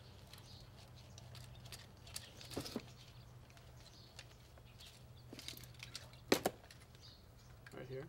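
Handling noise of a backflow test kit's differential pressure gauge and hoses being lifted out and held up: a few light knocks and clicks, the loudest a sharp click about six seconds in, over a steady low hum.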